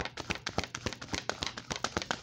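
A deck of tarot cards being shuffled by hand: a rapid, uneven run of papery clicks and slaps as the cards strike one another.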